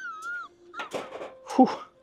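A wavering, wailing tone lasts about half a second, then a man exhales a loud "whew" near the end: audio from an edited-in meme clip.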